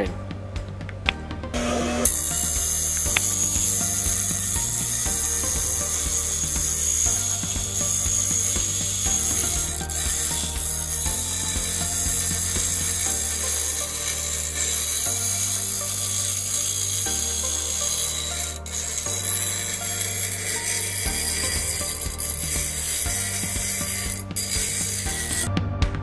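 Bench grinder wheel grinding steel: a steady, hissing grind that sets in about two seconds in and runs until just before the end.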